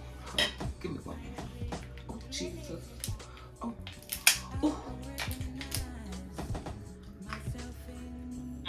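Cooked lobster being broken apart by hand, with many short clicks and cracks of shell and plate, over quiet background music.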